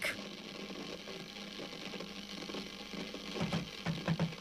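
A television on the blink giving off a steady buzzing hiss of interference, with a few soft knocks near the end.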